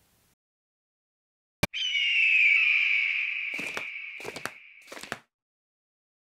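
Soundtrack effects: a single sharp crack, then a hissing, wind-like whoosh with a faint falling whistle that fades away over about three seconds, broken by a few short clicks near its end.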